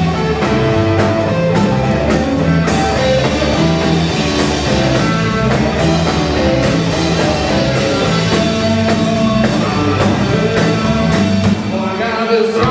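Live blues band playing an instrumental passage: electric guitar over a drum kit with a steady beat and bass notes.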